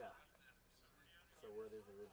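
Near silence in a pause of an interview, with a brief soft voiced murmur, like a hum, from a man near the end.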